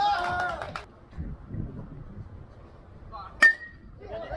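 A baseball bat hitting a pitched ball about three and a half seconds in: one sharp crack with a brief ringing tone, the loudest sound here. Before it, a man shouts near the start.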